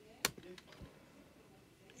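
A single sharp click from a laptop trackpad, followed by a quiet spoken 'yeah' and a fainter click about half a second later.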